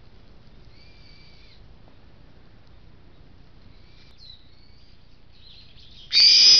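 Faint wild bird calls over low steady background noise: a held whistled note about a second in, then a couple of short down-slurred calls later on.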